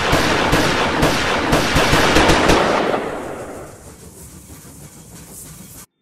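Rapid, irregular volley of gunshots, a sound effect for a train robbery shootout. It fades out about three seconds in, leaving a steady hiss that cuts off abruptly near the end.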